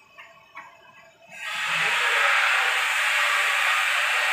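A steady, loud hiss that starts suddenly about a second and a half in and holds on evenly.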